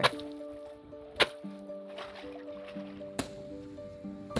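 Two sharp slaps of a soaking-wet cotton cloth beaten against a brick edge, about two seconds apart, to drive out the excess water. Background music with long held notes runs under them.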